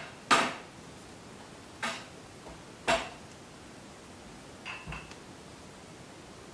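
Metal baking pans clattering against each other on a countertop: a loud clank just after the start, two more clanks about a second apart, then a couple of faint taps near the end.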